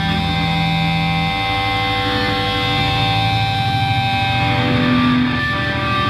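Live rock band: distorted electric guitar holding long sustained notes over a bass line.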